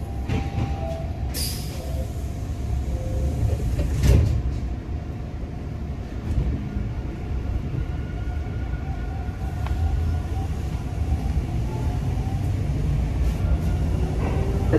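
Steady low rumble inside a Toronto TTC Line 2 subway car, with a sharp knock about four seconds in.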